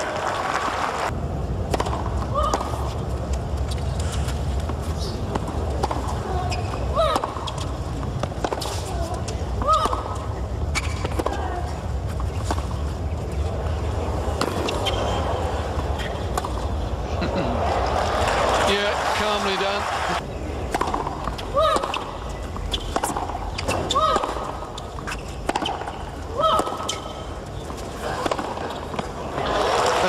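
Tennis court sound from a broadcast: repeated sharp pops of racket strikes on the ball, with occasional short squeaks, over a steady low background rumble that fades about two-thirds of the way through.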